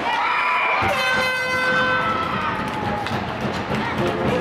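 Horns blaring in celebration of a goal, over a noisy crowd. Two notes start together, a lower note joins about a second in, and they die away about three seconds in.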